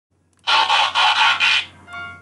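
Opening of a hip-hop track: about a second of loud, harsh, pulsing noise, followed by a brief ringing chime of a few clear tones.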